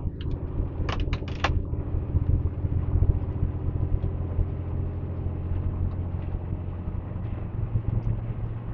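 Semi-truck diesel engine heard from inside the cab, a steady low drone as the truck pulls out and passes, with a few short clicks about a second in.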